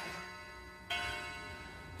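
A bell-like chime struck once about a second in, a stack of ringing tones that slowly fades; the dying ring of an earlier strike fades out before it.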